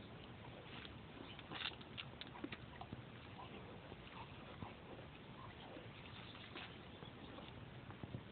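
A dog picking berries off a bramble with its mouth: faint, scattered small clicks of chewing and leaf rustle.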